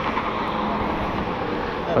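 Motorcycle engine running steadily nearby, a low even drone under a broad rush of noise.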